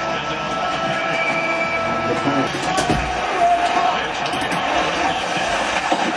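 A televised hockey game playing in the room: steady arena crowd noise with a commentator's voice faintly over it.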